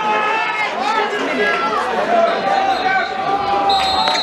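Football players and spectators shouting and calling across the pitch, with one long drawn-out shout and a few dull thuds of the ball being kicked. Just before the end a referee's whistle blows, a steady shrill blast that stops play.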